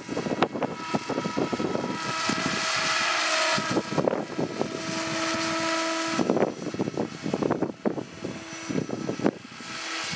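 Electric SAB Goblin 500 RC helicopter in flight: a steady motor and gear whine that shifts pitch several times as the head speed and load change, with a loud rushing rotor swish about two and five seconds in. Wind buffets the microphone throughout.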